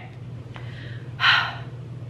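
A person sniffing once, sharply, a little over a second in, smelling a perfume; a faint click comes just before.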